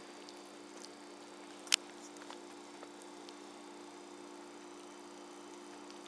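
A fork moving through wet vegetable puree in a metal bowl: a few faint ticks and one sharp clink of the fork against the bowl a little under two seconds in, over a steady low hum.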